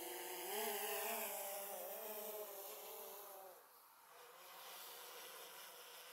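Faint buzzing hum of a DJI Phantom 4 Pro V2 quadcopter's propellers as it climbs away, several wavering tones that fade out about three and a half seconds in, leaving only a faint trace.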